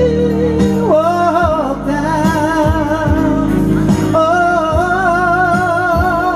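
Live soul ballad by a male vocal group: long held sung notes with vibrato over a band's backing, with a bass line and a regular drum beat.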